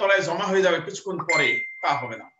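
A man speaking, lecturing; about two-thirds of the way in, a steady high electronic beep starts and holds for about a second over his voice.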